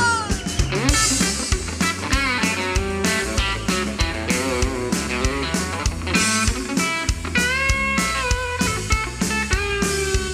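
Live country band playing, with an electric guitar lead whose notes bend up and down over bass and a steady drum beat.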